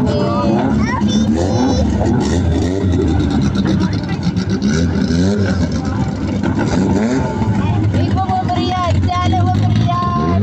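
Race car engines running at low revs as the cars roll slowly past one after another, a steady low hum, with many people's voices calling and chattering over it.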